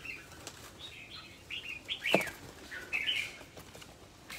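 Small songbirds giving short, scattered chirps, with a few sharp flutters or knocks, the loudest about two seconds in.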